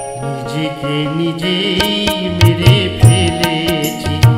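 Live Bengali folk (Baul) song music: held, steady chords with sharp repeating percussive strikes, and low drum beats coming in strongly about halfway through.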